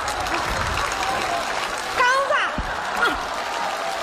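Studio audience applauding, with a short shouted exclamation from a performer about two seconds in.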